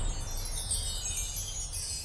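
Logo-reveal sound effect: a high, shimmering cascade of chime-like tinkles that drifts slowly downward in pitch.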